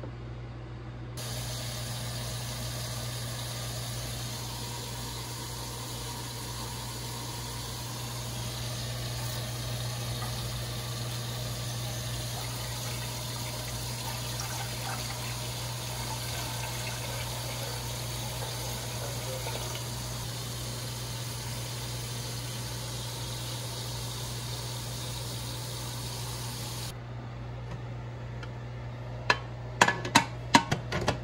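Water poured from a glass measuring cup into an aluminium pressure canner around the sealed jars, a steady pour that cuts off suddenly near the end. A steady low hum sits under it.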